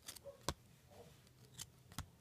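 A few faint, sharp clicks from handling trading card packs and cards, the loudest about half a second in.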